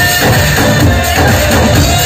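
Loud upbeat band music: drums and hand percussion keeping a steady dance beat under a melody of long held notes.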